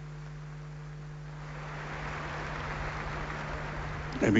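Steady low electrical hum from the microphone and sound system, under a faint wash of open-air crowd noise that grows a little louder from about halfway through.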